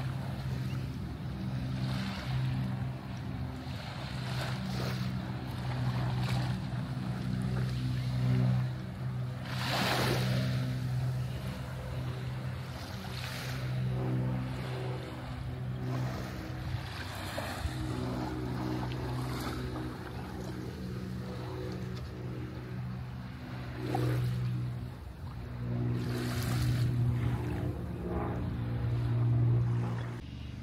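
Small waves washing gently onto a sandy beach in soft swells every few seconds, over a steady low engine hum from a boat out on the water.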